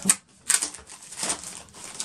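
Thin plastic packaging sleeve crinkling as an item is handled and unwrapped, in a few short rustles.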